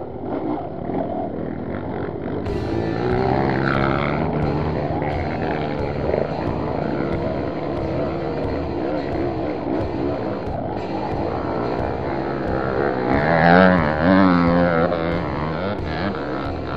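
Off-road motorcycle engine revving up and down as the bike climbs a hill, loudest about 13 to 15 seconds in, mixed with background music.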